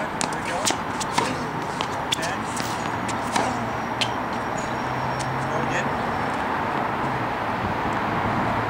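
Tennis balls being struck by a racket and bouncing on a hard court: a string of sharp knocks in the first half, thinning out later, over a steady low hum.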